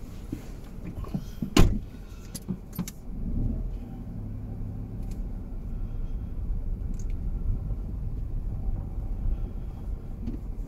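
Car heard from inside the cabin: a sharp knock about one and a half seconds in and a couple of lighter clicks, then from about three seconds in a steady low engine hum and road noise as the car pulls away and drives along the lane.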